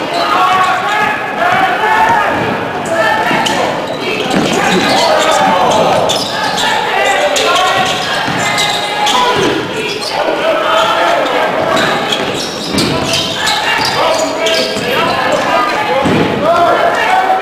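Basketball bouncing on a hardwood gym floor during live play, among indistinct voices of players and spectators echoing in a large gymnasium.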